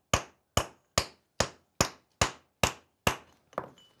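A hand-held stone hammer striking a bronze axe blank laid on a stone anvil: eight even knocks, about two and a half a second, stopping a little after three seconds in. The blows forge a cast bronze bar toward an early Bronze Age axe shape.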